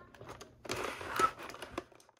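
Clear plastic toy packaging crinkling and crackling as it is handled, with small clicks; it starts about two-thirds of a second in and stops abruptly near the end.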